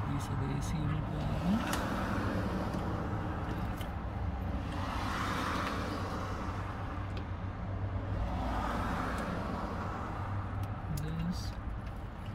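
Plastic wiring-harness connectors and loose wires being handled and plugged together, with a few light clicks, over a steady low hum and slow swells of vehicle noise.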